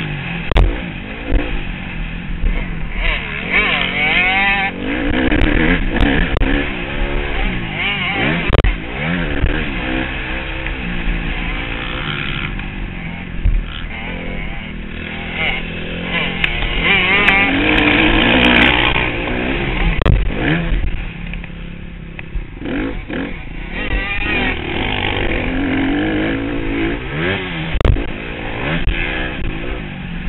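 Dirt bike engine revving up and down over and over as the rider accelerates and shifts through a motocross lap, with scattered knocks from bumps and landings. Wind rushes over the action camera's microphone.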